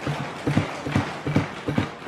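Members of parliament thumping their hands on wooden desks in approval: a rapid, uneven pounding from several hands at once.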